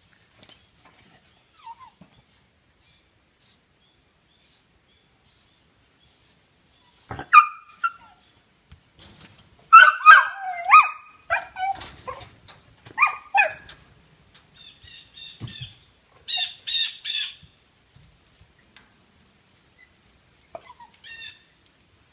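Small dog barking in short, sharp yaps, several in quick succession around the middle.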